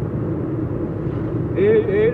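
Steady engine and road noise heard from inside a moving Nissan's cabin. A voice comes in near the end.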